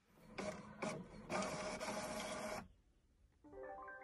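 HP Envy 100 inkjet all-in-one printer printing: paper feeding and the print mechanism running with clicks for about two and a half seconds, then stopping.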